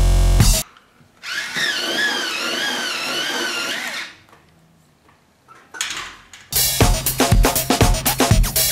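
Small electric pencil sharpener running for about three seconds as a pencil is sharpened, its motor whine wavering in pitch as the load changes.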